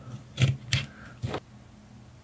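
Wire cutters snipping at the insulation of a thin wire: three sharp snips within about a second, with a faint steady low hum underneath.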